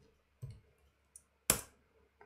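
Computer keyboard keystrokes: a soft tap about half a second in, then one sharp key click about one and a half seconds in, the return key submitting the typed name.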